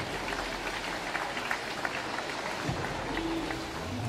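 Audience applauding steadily: a patter of many hands clapping.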